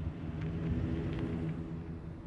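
Chevrolet cargo van's engine running at low speed as the van rolls slowly, a steady low hum.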